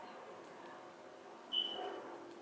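Quiet room tone, then one brief, high, thin squeak about a second and a half in.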